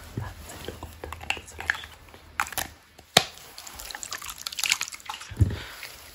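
Close-miked ASMR sounds: soft clicks and rustles, with one sharp click about three seconds in and a short low voiced sound near the end.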